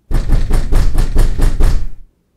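A short, loud burst of drum hits, about four to five a second, that starts and stops abruptly.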